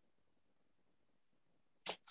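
Near silence, with the brief start of a man's voice just before the end.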